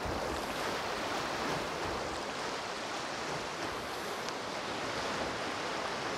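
Sea surf washing in among shoreline boulders: a steady, even rush of water with no single crash standing out.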